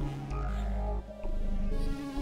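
Novation Supernova II synthesizer played live: held low notes with higher tones above them, the notes changing a few times, with a brief drop in level about a second in.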